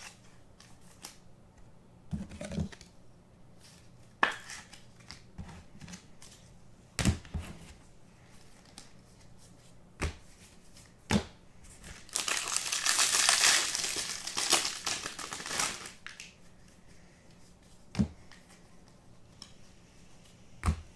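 Baseball trading cards being handled and flipped through, with scattered sharp clicks of cards snapping against each other. About twelve seconds in, several seconds of loud crinkling and tearing as a card pack's wrapper is ripped open.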